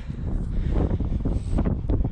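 Wind buffeting the microphone: an uneven, rumbling rush.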